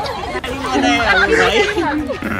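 Several people chattering at once, with no clear words: voices only, no other sound stands out.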